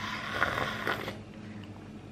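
Slurping a sip of tea from a ceramic mug: a hiss of drawn-in air and liquid lasting about a second, with a couple of small clicks in it.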